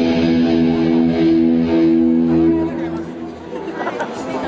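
An electric guitar chord held and ringing out for about three seconds, then fading away, over audience chatter in the hall.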